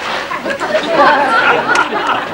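Theatre audience chattering and laughing in many overlapping voices, with clapping starting near the end.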